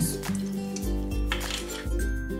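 Light background music with a steady beat, over a faint wet squish of olive oil being poured onto sliced mushrooms in a stainless steel bowl.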